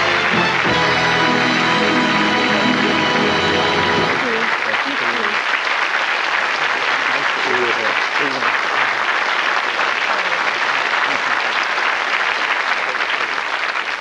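Studio audience applauding steadily, with a brass-and-band music sting playing over the first four seconds or so; voices and laughter rise through the clapping after the music stops.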